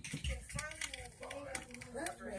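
Slime being worked with fingers in a small plastic container: a quiet run of quick, irregular clicks and crackles, with faint voices under it.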